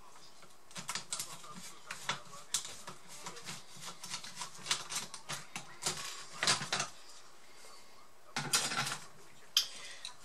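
Light, irregular clicking and tapping of a small screwdriver on screws and the plastic laptop case, with louder plastic clattering bursts about six and a half and eight and a half seconds in as the palmrest is unclipped and lifted off.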